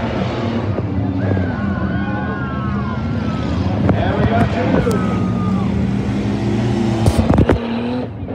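Engines of several small race cars running and revving around a dirt figure-eight track, with crowd voices over them. There are a few sharp loud knocks near the end.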